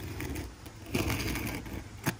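A knife blade scraping as it cuts through asphalt roofing shingles, in two rough strokes, the second starting about a second in and lasting most of a second.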